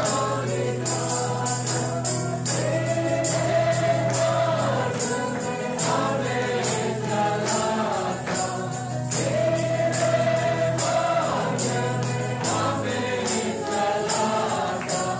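A choir singing Christian worship music in long held notes, over a steady, regular high percussion beat like a tambourine.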